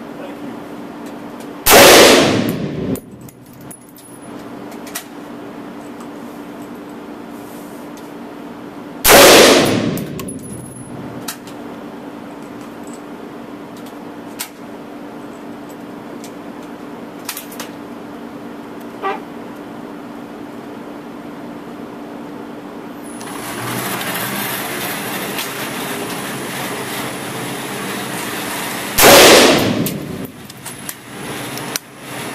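Three single rifle shots from a Daniel Defense M4 AR-15 in 5.56 mm, fired several seconds apart as a zeroing group, each a sharp crack with an echoing tail in an indoor range, over the steady hum of the range ventilation. A rushing noise rises in the seconds before the third shot.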